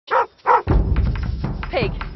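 A dog barks twice in quick succession, then film music comes in over a low, steady rumble, with a short falling cry near the end.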